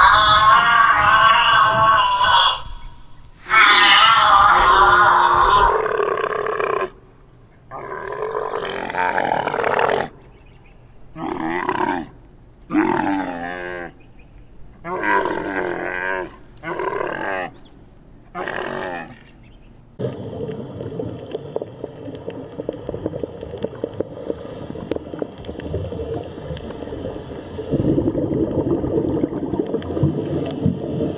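Camel groaning and bellowing: a string of about seven short calls with wavering, sliding pitch, after two longer, higher wavering animal calls in the first seven seconds. From about twenty seconds in, the calls give way to a steady rushing noise like water.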